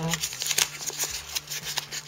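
Wrapper of a trading-card pack crinkling and tearing as it is pulled open by hand, with a quick, irregular series of crackles and rustles.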